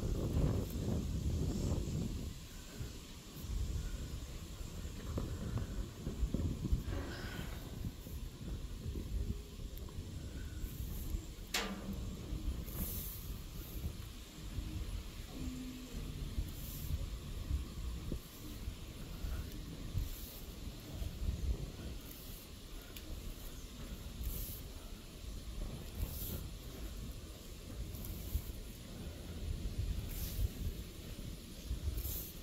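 Low, uneven rumble of wind and handling noise on a phone microphone as it is carried up steel stairs, with faint hissing every couple of seconds. A single short falling whistle comes about a third of the way in.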